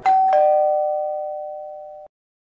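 Doorbell ringing a two-note ding-dong: a higher note, then a lower one about a quarter second later, both ringing on and fading slowly.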